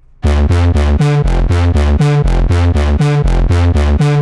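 Output Substance bass synth playing a fast arpeggiated bass pattern in 16th notes with swing: short, punchy low notes at about four to five a second, hopping between a few low pitches. It starts about a quarter second in.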